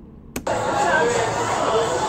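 A click, then the steady sound of a busy town street: car engines running, with voices in the background.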